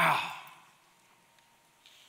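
A man's voice says a single "wow" at the very start, fading within about half a second; the rest is near silence.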